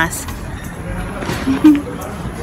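Street background noise, a steady rush of traffic, with a short snatch of a woman's voice about one and a half seconds in.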